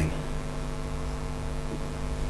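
Room tone: a steady low electrical hum with a faint even hiss.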